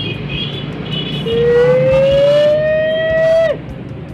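A woman wailing in distress: one long held cry that rises slightly in pitch over about two seconds and breaks off sharply, after a few shorter high cries. A motorcycle engine runs steadily underneath.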